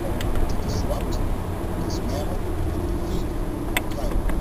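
Inside a moving car: a steady low rumble of tyres and engine on the road, with a voice talking faintly underneath and a couple of light clicks.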